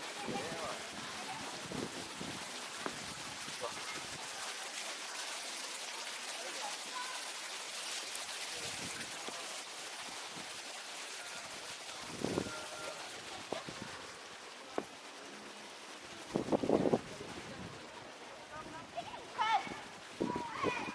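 Steel pétanque boules thrown onto a gravel court, landing with a few short clicks and thuds over a steady background hiss.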